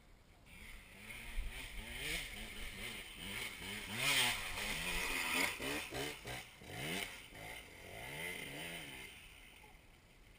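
Dirt bike engines revving up and down again and again under load on a steep, slippery hill climb. The revs are loudest about four and seven seconds in and die away near the end.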